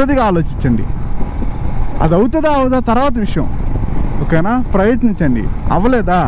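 Steady low engine and wind rumble from a motorcycle under way, under a man's voice talking in short stretches with pauses between them.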